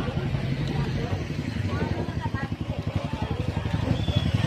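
Small motor scooter engine idling close by, a rapid, steady putter, with faint voices in the background.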